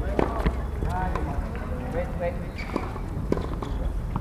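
Voices of tennis players talking on the court, with a few sharp knocks near the start and one about three seconds in.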